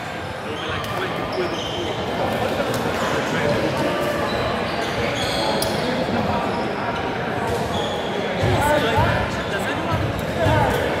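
Echoing sports-hall ambience during a volleyball match: indistinct voices of players and spectators, short squeaks of shoes on the court floor, and a few thuds of a ball bouncing.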